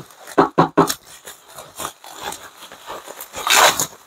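Bubble wrap crinkling and rustling as it is handled and pulled open by hand, in irregular bursts, loudest near the end.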